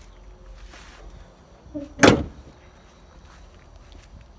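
A Camaro Z28's hood slammed shut: a single loud bang about two seconds in.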